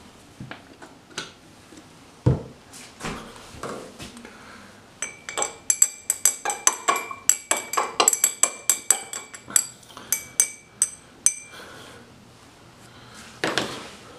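Glass stirring rod clinking rapidly against a glass beaker as liquid is stirred, about five ringing clinks a second from about five seconds in until past eleven seconds. A few scattered knocks come before, the loudest about two seconds in, and one more knock comes near the end.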